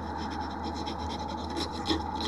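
Scratchy rubbing noise over a steady hum and hiss, with a few rough strokes in the second half.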